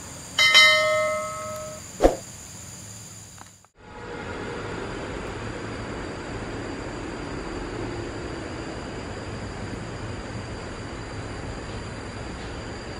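A bell-like notification chime from a subscribe-button animation rings about half a second in and fades over a second and a half, followed by a sharp click. After a brief drop-out, steady outdoor road ambience with a distant vehicle running and a faint steady high tone.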